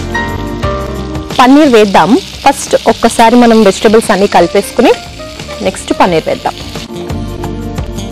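Chopped vegetables (mushrooms, beans, onion, tomato) sizzling in hot oil in a frying pan as they are stirred. Background music plays throughout, with a loud sliding, wavering melody from about a second and a half in until about six and a half seconds.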